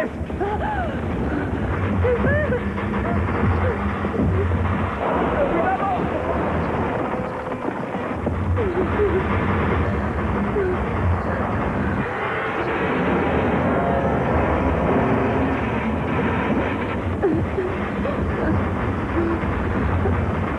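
Film sound effects of the ship's hull grinding along an iceberg: a deep, continuous rumbling, mixed with scattered voices and some music.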